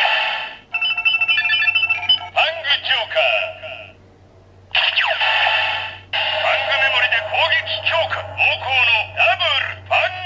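Fang Joker DX RideWatch toy playing its electronic sounds through its small built-in speaker. About a second in comes a short beeping jingle, then recorded voice calls and sound effects. The sound is thin and tinny, with a brief gap near four seconds.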